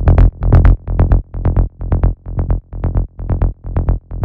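Techno kick drum and a rolling synth bassline from an FL Studio FLEX preset looping together, about four heavy low pulses a second, the bass sidechained to duck under each kick and driven through overdrive.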